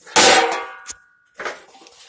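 A metal hubcap clanging against another metal hubcap as it is set down, ringing for about a second, followed by a softer knock.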